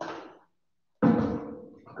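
A man's voice: a short soft breathy sound at the start, then about a second in a sudden, loud, held vocal exhale that fades away, the audible 'ahh' of catching breath after a drink during a workout break.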